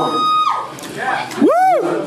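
Voices between songs: a held voiced sound trails off, then a short whoop that rises and falls in pitch about one and a half seconds in.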